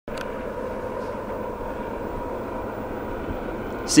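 Distant approaching freight train with GE diesel locomotives: a steady low noise with faint steady tones. A man's voice starts right at the end.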